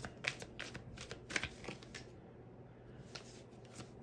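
Tarot cards being shuffled by hand: a run of quick, soft card flicks and riffles, easing off for about a second two seconds in, then picking up again.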